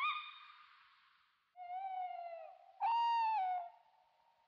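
Owl hooting: two held hoots about a second apart, the second higher and falling at its end, after a short rising tone at the very start.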